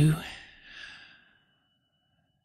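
A slow, breathy exhale, a sigh-like out-breath that fades away over about a second, followed by near silence.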